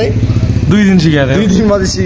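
Motorcycle engine running steadily with an even low pulse, under men's voices talking.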